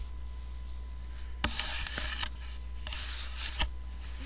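Bedding rustling in two bursts as a person shifts her weight on the bed and moves her hands through the comforter, with a few sharp clicks among the rustling.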